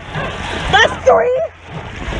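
High-pitched wordless yelling from female voices in a racing eight, two or three rising-and-falling cries near the middle, over a wash of water noise along the boat.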